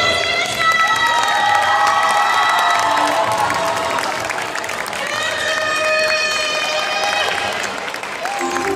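Two female vocalists singing live into microphones, holding long notes, while the audience cheers.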